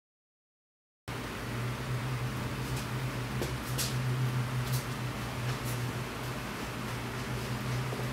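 Silence for about a second, then the steady low mechanical hum of a workshop's room tone, like a running fan, with a few faint ticks.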